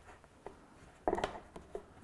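Fingers pressing lampshade fabric down under the ring onto its adhesive tape: faint rubbing and small ticks, with one louder, brief scuffing rustle about a second in.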